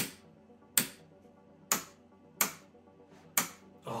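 The rotary dial on a Panasonic TR-555 four-inch portable TV being turned by hand, clicking through its detents: five sharp mechanical clicks, about one every three-quarters of a second, each with a short ring.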